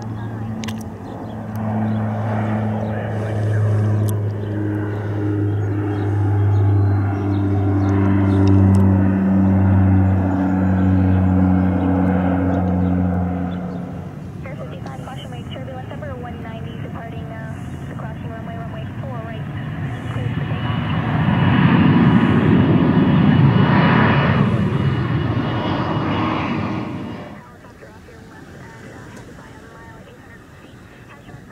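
A twin-engine propeller plane's engines drone with a steady low hum, pulsing slowly as the two engines drift in and out of step, then stop abruptly about halfway through. A twin-engine regional jet then passes close. Its engine noise carries a thin high whine, swells to the loudest point of the clip, and cuts off suddenly a few seconds before the end.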